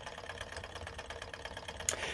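Small hot-air Stirling engine kit running on a methylated-spirits wick burner, its piston and crank linkage ticking in a fast, even rhythm.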